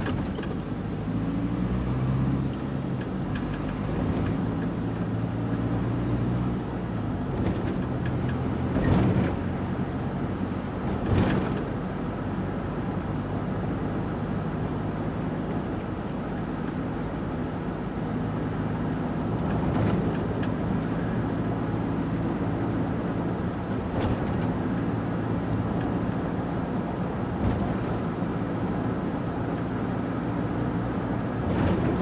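Car engine hum and road noise heard from inside the cabin while driving steadily, with two brief thumps about nine and eleven seconds in.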